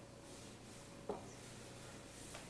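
Quiet room tone with a faint steady electrical hum, broken about a second in by one short spoken word.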